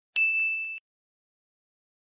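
A single bright electronic ding: one steady high chime held for just over half a second, then cut off abruptly.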